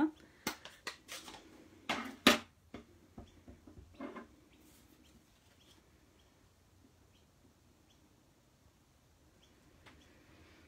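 Several sharp plastic clicks and knocks from handling a Stampin' Up ink pad and a clear acrylic stamp block, the loudest about two seconds in. The ink pad's lid is opened and the stamp is inked. After about five seconds it falls to a quiet stretch while the stamp is pressed onto the card.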